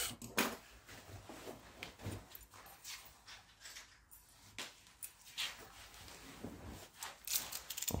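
Faint, scattered knocks and clicks of small objects being handled and set down on a wooden stool top, with a few sharper clicks near the end as a snap-off utility knife is picked up.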